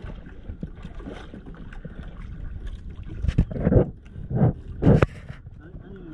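Water lapping against the hull of a small outrigger fishing boat, with three louder slaps or splashes in the second half.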